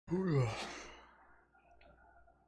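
A man's voiced sigh, its pitch rising and then falling, trailing off into breath within about a second.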